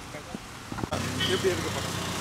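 Street traffic noise: a steady hum of passing road vehicles with faint voices around. It gets louder about a second in.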